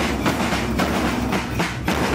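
Marching drum band of bass drums and snare drums playing a steady beat, about two accented strokes a second with snare clatter between them.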